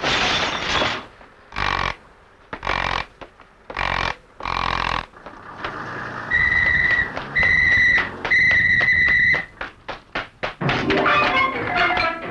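Film sound effects and music: five loud, separate bursts of sound in the first five seconds, then three long, steady, high-pitched tones with short gaps between them. Near the end come a quick run of clicks and then music.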